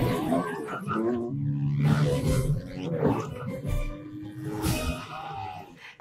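Film soundtrack of a motorbike chase: a loud crash of breaking glass right at the start as a motorcycle bursts through a window, then motorcycle engines revving, over orchestral score and people gasping.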